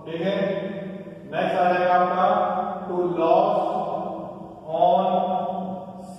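A man's voice in slow, drawn-out, chant-like phrases, about four of them, each held for a second or more.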